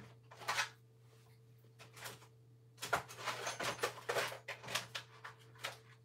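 Soft clicks, knocks and rustling of small objects being handled and moved about while rummaging for a knife: a few scattered ones at first, then a busier run from about three seconds in.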